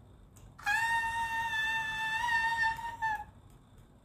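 A young woman's high-pitched squeal of effort, held steady for about two and a half seconds from just under a second in, as she strains in an arm-wrestling bout.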